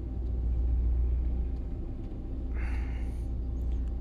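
Steady low background hum throughout, with a short breathy hiss about two and a half seconds in.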